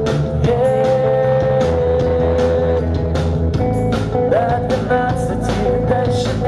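Live rock band with a male lead singer holding long sung notes over drums, bass and guitar; the bass line shifts about three and a half seconds in.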